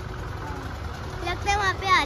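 A steady low rumble of road traffic, with voices talking over it in the second half.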